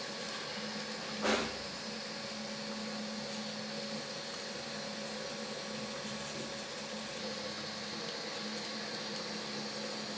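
3D printer running while printing, a steady mechanical hum, with one sharp click about a second in.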